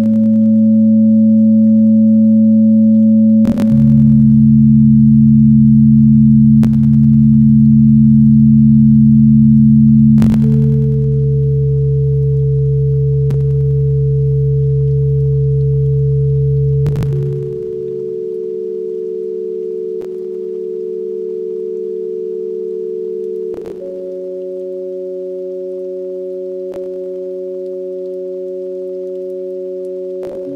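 Ambient synthesizer drone music: layered steady, pure low tones that shift to new pitches about every six or seven seconds, with a faint click at each change. It grows somewhat quieter about two-thirds of the way through.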